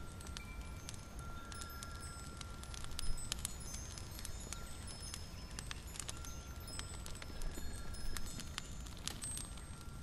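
Soft fantasy ambience: a steady low rumble under scattered tinkling, chime-like high notes and small clicks, with one slightly louder pop about three seconds in.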